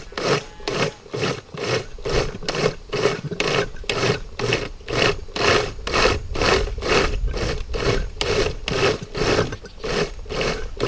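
Countertop blender running, chopping chunky salsa vegetables in a little broth, its sound swelling and fading evenly about three times a second.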